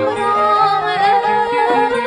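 A woman sings a Khmer traditional (pleng boran) wedding song through a microphone, her voice gliding and ornamented over a traditional instrumental ensemble.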